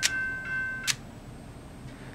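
Electronic crossing-bell sound from a Kato N-scale North American automatic crossing gate's built-in speaker, played in its power-up test sequence. It is a high ringing tone pulsing about twice a second. It stops with a click about a second in.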